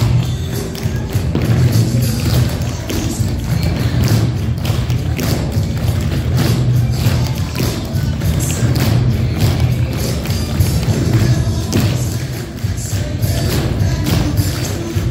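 Tap shoes of a class of dancers striking a wooden floor, many quick taps and stamps, over recorded dance music with a strong bass line.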